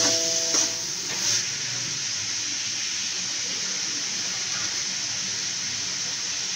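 Grated carrot and prawns sizzling steadily as they fry in a metal pan, with the ladle knocking a few times against the pan in the first second or so.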